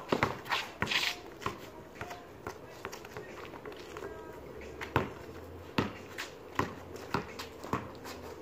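Basketball bouncing on concrete during dribbling, a string of sharp, irregularly spaced thuds, with sneaker footsteps scuffing between them.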